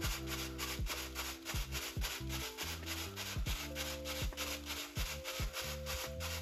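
Background beat music with a bass line and regular drum hits, over the rubbing of a crumpled plastic bag being dabbed and pressed into wet gloss enamel paint on paper.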